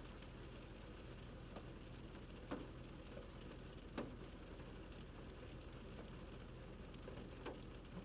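Quiet background: a low steady hum and hiss with a few faint, scattered clicks or taps.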